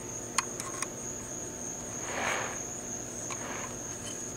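A few faint clicks and a brief soft rustle of fingers handling a small diecast model car, over a steady high-pitched tone.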